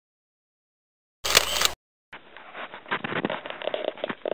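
A single camera-shutter click sound effect a little over a second in, with silence either side. Near the end, low irregular rustling and handling noise starts up.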